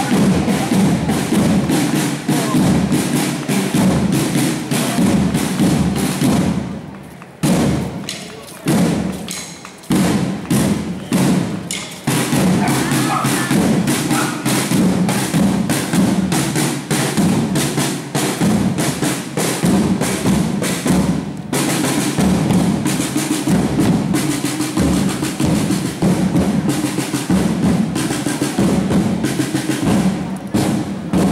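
A corps of rope-tensioned parade drums beaten with sticks in a fast marching rhythm. The beat drops out about seven seconds in, comes back as scattered single strokes, and picks up steadily again from about twelve seconds.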